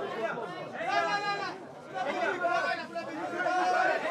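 Press photographers calling out and talking over one another, several voices at once with held, shouted calls and a brief lull about halfway through.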